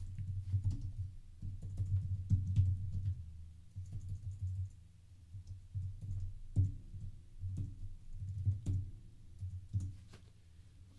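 Typing on a computer keyboard: a run of keystrokes in uneven bursts, each with a dull low thud.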